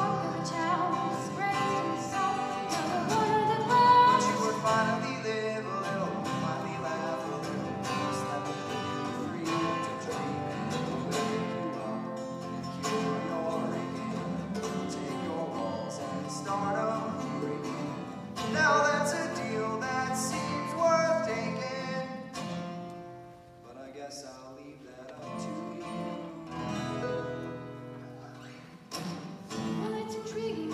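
Live singing accompanied by strummed acoustic guitars. The music thins and quietens for several seconds near the end, then picks up again.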